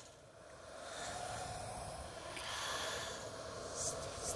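Quiet, breathy sounds like heavy breaths or inhales swell and fade a few times over a faint sustained drone, in the sparse opening of a rock song.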